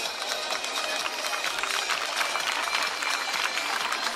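Audience clapping: many hands giving dense, irregular claps, with music playing faintly underneath.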